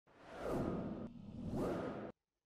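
Two whoosh transition effects from an animated title, each a swell that rises and fades, about a second apart.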